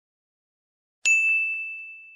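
Notification-bell sound effect: a single bright ding about a second in, ringing on and slowly fading, with two faint clicks under it.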